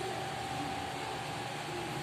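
Steady hiss of electric fans running in the hall, with a faint steady tone through it.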